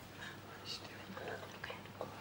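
A hushed pause in a waiting group: faint whispering and breathing with a few small clicks, the held silence before a result is read out.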